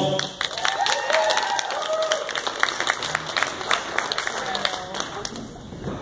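A room of guests applauding, with a few voices calling out. The clapping thins and dies away near the end.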